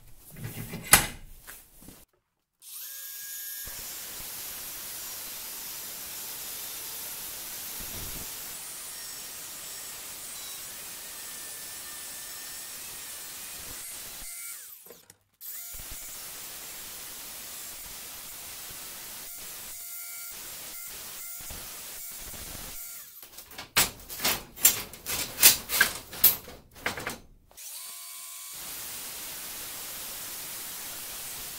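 Angle grinder running steadily as it grinds and cuts steel, with a few abrupt breaks. About three-quarters of the way through, a run of loud, irregular knocks and clanks lasts some three seconds. There is a sharp clank about a second in.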